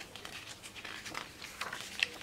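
Pages of a photobook being turned and smoothed down by hand: faint paper rustling with a few soft flicks.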